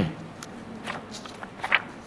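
Sheets of paper rustling and crinkling in short, separate bursts as they are handled and folded, the loudest near the end.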